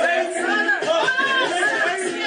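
Several people talking and calling out over one another, indistinct chatter.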